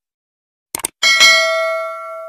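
Two quick mouse clicks, then a bright bell chime struck twice in quick succession that rings on and slowly fades. This is the notification-bell sound effect of a subscribe-button animation.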